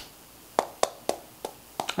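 Several short mouth clicks and lip smacks, five or so in two seconds, with quiet room tone between. They come from a man choked up and swallowing in a pause in his talk.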